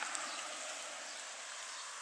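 Steady outdoor background hiss in a garden, even and without distinct events, slowly easing off.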